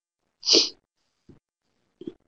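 A single short, breathy burst from a person near the microphone, about half a second in, sneeze-like and hissy.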